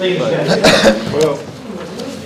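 A cough or two about half a second in, amid low indistinct talk.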